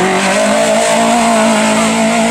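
Volkswagen Golf Mk1 race car's engine pulling hard out of a hairpin, its note rising steadily as the car accelerates away uphill.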